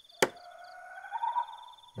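A single sharp hammer strike on a nail in a wooden sign, about a quarter second in, followed by faint, high, repeated chirping in the background.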